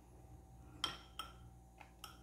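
A few light clinks of a spoon against a ceramic bowl: a sharp one a little under a second in, a second shortly after, and a faint one near the end, each with a brief ring.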